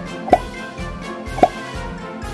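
Background music with a steady beat, and a short pop sound effect twice, about a second apart, as on-screen buttons pop up.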